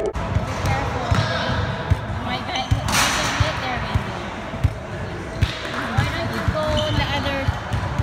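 Basketball bouncing on a hardwood gym floor during play, with sneakers squeaking on the court and players' voices in the background.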